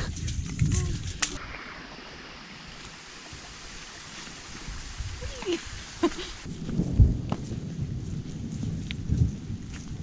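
Steady hiss of rain falling on the jungle foliage. From about six and a half seconds in, it gives way to low rumbling and a few thuds of footsteps on the trail.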